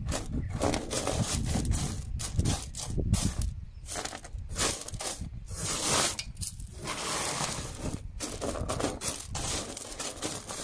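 Wet sapphire wash gravel being pushed and spread by hand across a flat sorting surface, the stones scraping and rattling in irregular strokes with short pauses between them.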